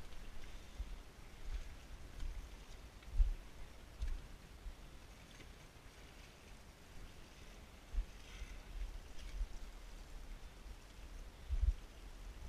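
Wind rumbling on the camera's microphone in gusts, with a few dull thumps.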